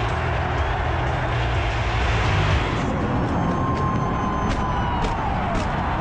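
Loud, steady stadium crowd noise with wind rumbling on the microphone. About halfway through comes a long, slowly falling whistle with sharp pops, as of pregame fireworks going off over the stands.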